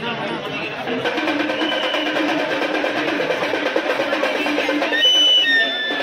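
Rhythmic drumming and percussion starts about a second in, over a crowd talking. Near the end a few short, high, shrill tones sound.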